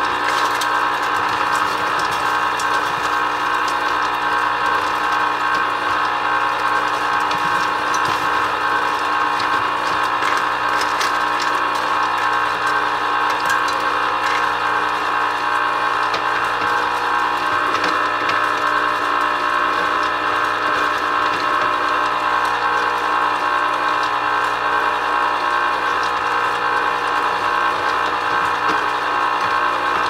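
Nostalgia electric ice cream maker running, its motor turning the canister in a steady mechanical hum made of several even tones, with a few faint clicks. The batch is in its last minutes of churning.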